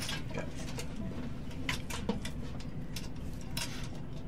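Faint scattered clicks and taps of instruments being handled, over a low steady room hum, with no playing yet.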